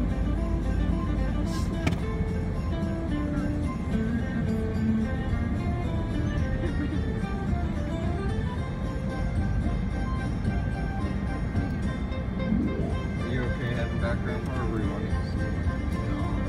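Holiday music playing on the car radio inside a moving car, over the steady low rumble of the car on the road.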